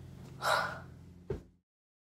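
A boy's short, sharp, breathy gasp about half a second in, followed by a brief low thump.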